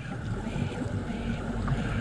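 Motorboat engine idling: a steady low hum that sets in just after the start, over a low rumbling background noise.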